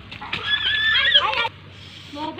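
A child's high-pitched squeal, held for about a second and wavering at the end.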